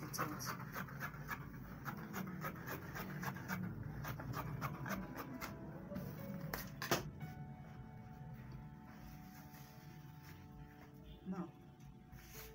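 Fabric shears snipping through cloth against a wooden table, a quick series of cuts over the first several seconds, then a single sharp knock about seven seconds in. Faint music with steady tones runs underneath and is clearer once the cutting stops.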